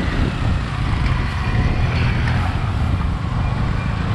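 Motorcycle engine running steadily while riding, a continuous low rumble.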